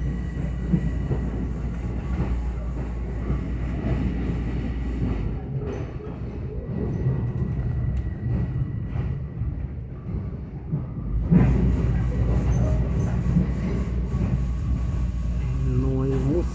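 Passenger train running, heard from inside the car: a steady deep rumble with a faint high whine. The rumble eases for several seconds midway, then comes back with a knock about eleven seconds in.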